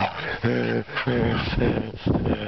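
A dog vocalizing in three short pitched calls over two seconds.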